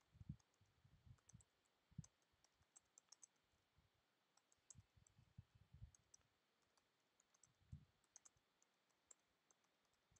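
Faint, irregular clicking of typing on a computer keyboard, with keys tapped in short runs and brief pauses between them.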